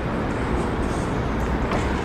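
Steady outdoor background noise: a low rumble under an even hiss, with no distinct events.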